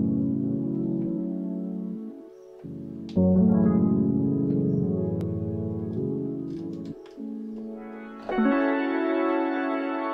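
Modal Argon8 wavetable synthesizer playing sustained polyphonic chords, each fading slowly. A new chord sounds about three seconds in and another near the end, with the chord inversion mode reordering the notes of the voicing.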